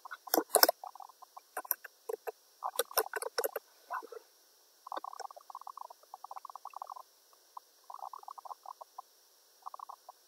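Computer keyboard typing in quick runs of keystrokes, with scattered single clicks.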